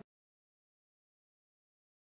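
Digital silence: the sound track is completely empty.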